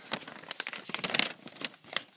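A paper letter being opened and handled: crinkling and rustling of paper, loudest a little past the middle, with a sharp crackle near the end.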